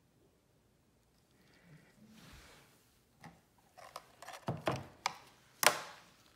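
Plastic tools and cups handled on a work table: a soft swish about two seconds in, then a run of light clicks and knocks, the sharpest just before the end.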